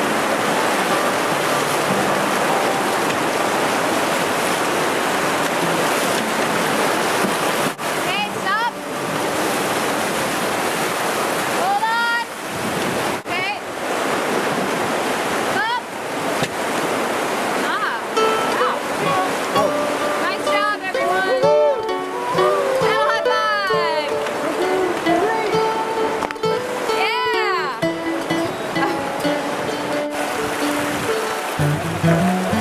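Rushing whitewater of a river rapid heard from a raft in the middle of it, a loud steady roar. About 18 seconds in the roar thins, and voices calling out and music come to the fore.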